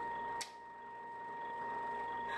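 A steady high-pitched whine, with one sharp click about half a second in.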